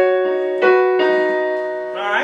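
Piano playing a short figure of two-note chords, demonstrating a passage just taught. A chord is struck as it begins and another about two-thirds of a second in, each left to ring and fade.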